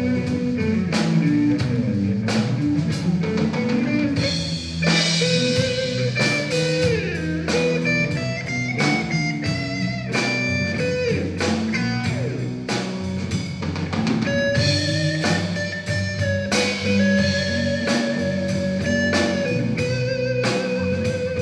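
A blues band playing live: electric guitars, bass guitar and drum kit keep a steady beat. Held, slightly wavering high lead notes come in over them in the last few seconds.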